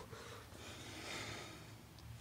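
A faint breath out, a soft hiss lasting about a second.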